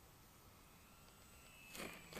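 Near silence: faint outdoor quiet, with a faint thin whine in the second half and a brief louder noise starting just before the end.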